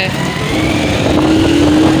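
Small Honda motorcycle engine running, a rough, rapid low-pitched beat with a faint steady hum over it from about half a second in.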